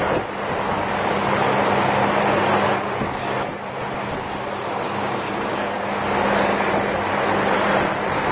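Steady, fairly loud rushing noise with an even low hum underneath, dipping slightly in loudness for a moment about three and a half seconds in.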